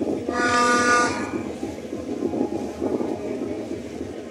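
A single horn blast about a second long near the start: one steady note with many overtones. Continuous crowd noise runs underneath.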